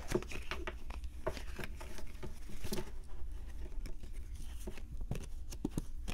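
Oracle cards being handled and shuffled in the hands: a run of soft, irregular clicks and light rustles of card stock.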